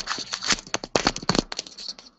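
Rapid, irregular clicking and rattling of things being handled on a desk close to the microphone, in one dense run that stops just before the end.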